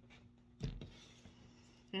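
Faint handling of a tarot deck: one short soft knock of the cards about half a second in, over a low steady hum.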